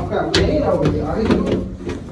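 Indistinct, overlapping talk of several people, with one sharp click about a third of a second in.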